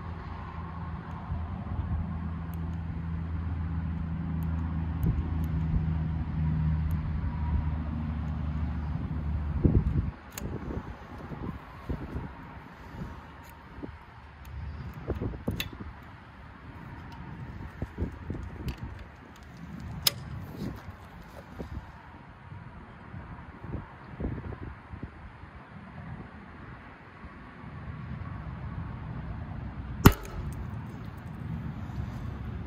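A low, steady vehicle engine hum for the first ten seconds, then scattered clicks and knocks of metal hand tools being handled as a ratchet driver is fitted to a torque gauge and turned with a breaker bar, with one sharp click about twenty seconds in.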